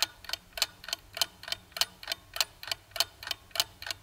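Clock-ticking countdown sound effect: a steady tick-tock of sharp ticks, about three a second.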